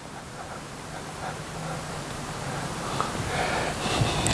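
Outdoor background noise: an even hiss that slowly grows louder, with a faint low hum near the middle.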